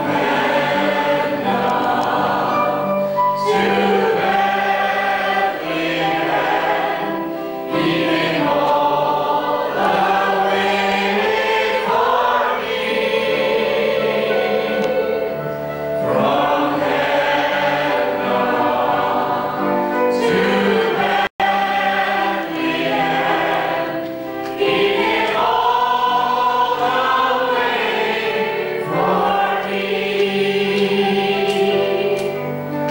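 A choir of women and girls singing together in phrases a few seconds long. The sound cuts out for a moment about two-thirds of the way through.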